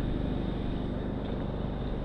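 Steady noise of riding a bicycle along a tarmac lane: tyres rolling and wind on the camera's microphone, with a low hum running underneath.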